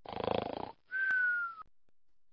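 Cartoon-style snoring sound effect: one rattling snore, then a short high whistle that slides slightly down in pitch and stops abruptly.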